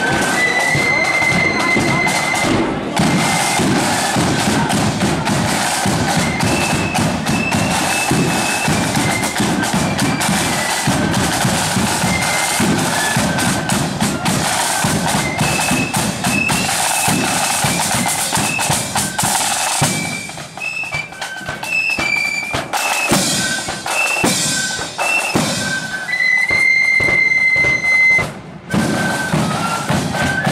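A marching flute band playing: side drums beating a dense, steady rhythm with flutes piping a melody above them. A little after the middle the drumming breaks up for a few seconds, and near the end the flutes hold one long note.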